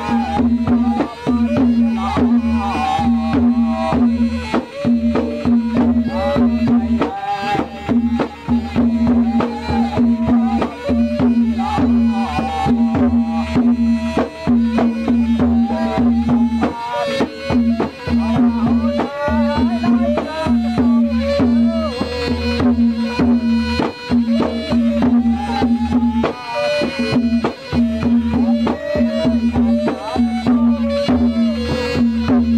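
Traditional Khmer music: hand drums beat steadily under a wavering melody, over a repeated low note that pulses through the whole passage.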